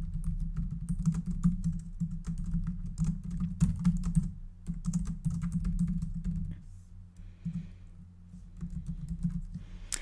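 Typing on a computer keyboard: quick runs of key clicks, pausing about seven seconds in before a few more keystrokes near the end, over a steady low hum.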